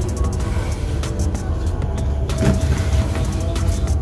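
Background music with a strong, steady low end.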